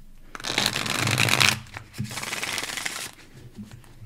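A tarot deck being shuffled by hand in two bursts of about a second each, with a short pause between them.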